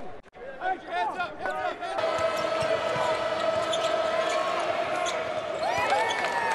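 Basketball game sound: sneakers squeaking on the hardwood court, then a steady crowd din from about two seconds in with one long held tone over it. Another squeak and a falling squeal come near the end.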